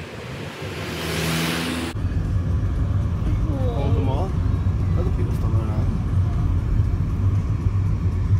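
A motor vehicle passing close on the road, its noise swelling to a peak. The sound then cuts off sharply into a louder, rough low rumble with the faint chatter of a crowd over it.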